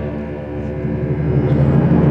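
Concert band music: a held brass chord dies away and a low timpani roll swells up in its place.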